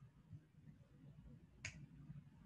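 Near silence of room tone, broken by one short sharp click a little past halfway through, the click that advances the presentation slide.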